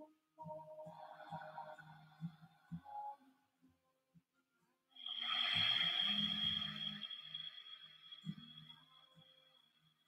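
Calm background meditation music; about five seconds in a bright bell-like tone sounds and rings out, fading slowly over the next few seconds.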